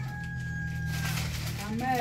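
Rooster crowing, one long flat final note that ends about a second in, followed near the end by a person's voice.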